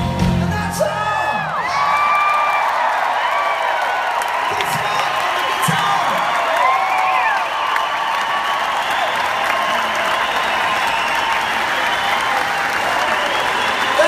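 Large concert crowd cheering and applauding steadily after a rock song ends, with many whistles and whoops rising and falling over the clapping. The band's last chord dies away just after the start.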